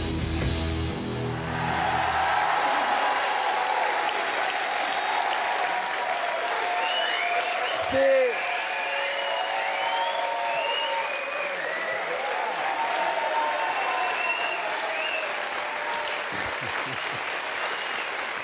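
Rock guitar music plays for the first couple of seconds, then a studio audience applauds steadily, with cheers and shouts scattered through the clapping. One loud shout comes about eight seconds in.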